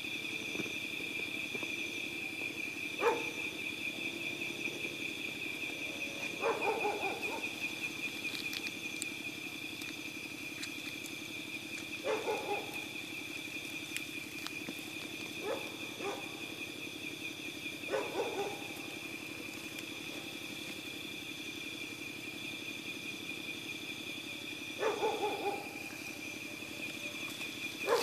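Night insect chorus of crickets: a steady high pulsing trill over a lower steady drone. A short low call from an unseen animal cuts through it several times, every few seconds.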